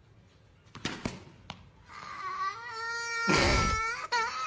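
A young boy crying after being hit by a ball: a couple of sharp knocks about a second in, then a wail that starts about two seconds in, rises in pitch and is loudest near the end.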